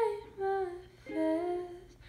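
A woman humming a melody without words: three short held notes that step up and down in pitch, then a brief pause near the end.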